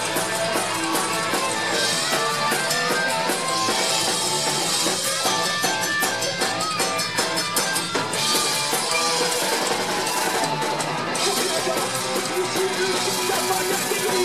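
Live rock band playing loud electric guitars over a busy drum kit with frequent cymbal hits.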